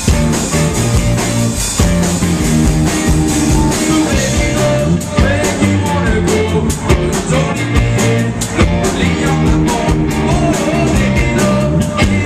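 A rock band playing live, with electric guitar, bass and drum kit. A male lead singer comes in over the band in the second half.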